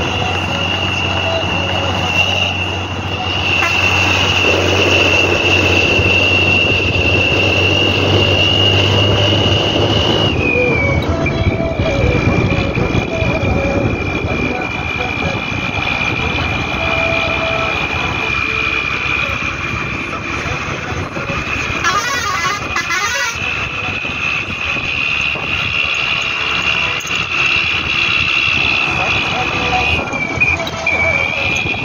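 Bus engine running, heard from inside the bus, with a steady high whine that drops in pitch about ten seconds in as the engine note changes. A horn sounds briefly about two-thirds of the way through.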